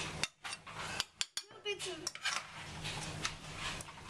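Metal saucepan and utensils clinking and knocking against china dinner plates while vegetables are served: a scatter of short, sharp clicks and knocks.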